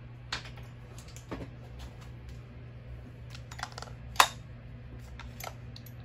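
Handling noise as an old chainsaw is picked up off a workbench: a scatter of sharp clicks and light knocks of plastic and metal, the loudest a sharp knock about four seconds in, over a steady low hum.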